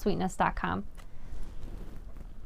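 A woman's voice finishing a sentence in the first second, then only faint, even room noise.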